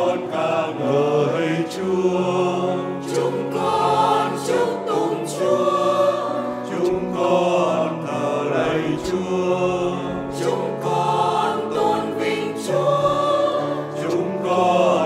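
A mixed choir of women's and men's voices singing in harmony, in phrases of held notes.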